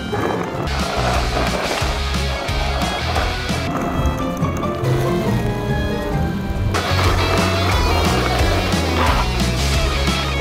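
Background music playing over the rolling of a 3D-printed skateboard's plastic wheels on pavement.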